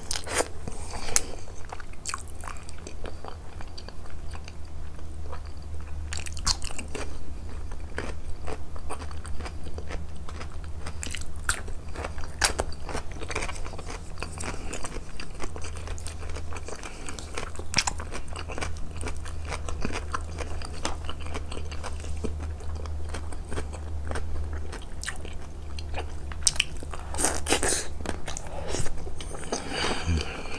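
Close-miked chewing and biting of mouthfuls of rice and stew, a dense run of short wet clicks and smacks from the mouth, with a low steady hum underneath.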